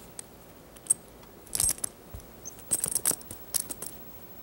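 Small metal clasp and chain on a bag jingling and clinking in several short clusters as a kitten paws and noses at it.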